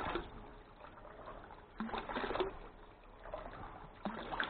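Water splashing from a PVC outlet pipe into a plastic tub, delivered by a 12 V gear-motor-driven diaphragm pump. The flow surges, with a louder gush about two seconds in.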